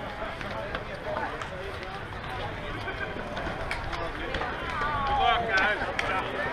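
Distant, indistinct voices of softball players calling to each other across an open field, over a steady low rumble of wind on the microphone. Near the end one voice calls out more clearly, its pitch rising and falling.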